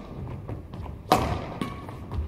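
A badminton shuttlecock struck with a Yonex Duora 10 racket strung with Ashaway Zymax 66 Fire, a sharp crack about a second in that echoes around the sports hall. Fainter taps follow during the rally.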